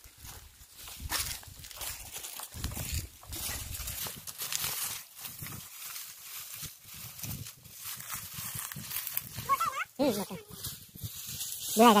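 Dry straw and stalks rustle and crackle as they are handled and pulled aside during a search. Near the end a few short, wavering calls are heard, which fit the bleat of a goat.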